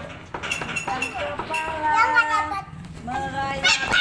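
Several young children's high-pitched voices calling out and chattering while they play, with some notes held and a shrill rise near the end.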